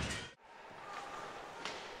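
Faint ice-rink arena ambience, a low even wash of noise. It comes in after the louder sound before it fades and cuts out about a third of a second in, and a single faint tap sounds near the end.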